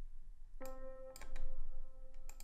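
A C major chord played on a software piano (the FLEX plugin in FL Studio), starting about half a second in and ringing on, with a few mouse clicks over it.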